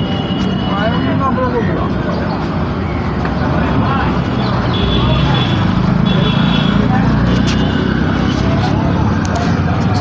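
Street traffic: a steady low rumble of engines that grows louder about halfway through as a vehicle passes close.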